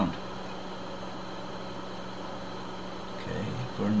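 A steady low machine hum, unchanging, in a pause between spoken sentences; a voice starts again near the end.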